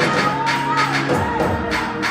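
Live gospel praise music from a drum kit and bass guitar playing a fast, steady beat, with voices singing and shouting over it.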